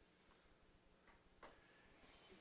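Near silence with a few faint, short ticks, the clearest about one and a half seconds in: a computer mouse clicking to pick an item from an on-screen menu.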